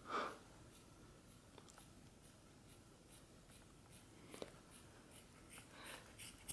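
Kitchen scissors slowly working through a thick ponytail of hair: faint crunching snips with a few small clicks, the sharpest about four and a half seconds in.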